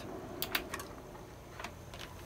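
A few faint clicks and taps of an oscilloscope probe being lifted off a laptop motherboard and set down on the bench: a quick cluster about half a second in and one more click later, over quiet room tone.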